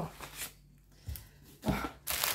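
Quiet handling sounds of packages on a wooden table: a short light knock about a second in, then a duller, louder thump near the end as a plastic-wrapped bundle is set down.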